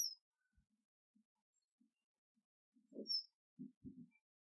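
Mostly quiet, with a bird giving two brief high chirps, one at the start and one about three seconds in. Soft low knocks and rustles of hands handling the convertible-top flap mechanism come in the second half, ending in a thump near the end.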